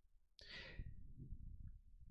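A man's sigh, a single breathy exhale close to the microphone about half a second in, trailing off, followed by faint low rumbling.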